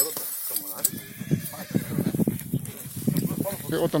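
A young horse whinnying, with hooves stamping and scuffling on the ground and men's voices around it.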